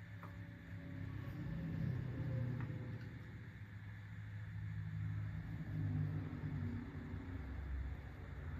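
A low background rumble that slowly swells and fades, with no clear events in it.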